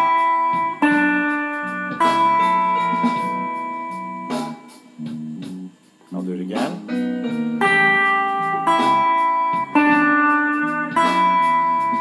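Electric guitar, a Fender, plays a short E minor pentatonic motif in open position: third fret and open on the high E string, then third fret on the B string. The notes ring out, and the figure repeats several times in short phrases.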